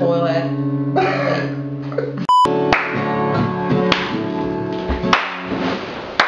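Acoustic guitar: a chord rings under a voice, then a short electronic beep about two seconds in, after which the guitar strums chords that ring out, a new strum roughly every second.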